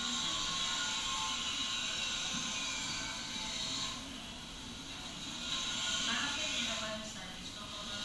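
Indistinct voices of people at a market stall under a steady hiss, dipping a little about halfway through.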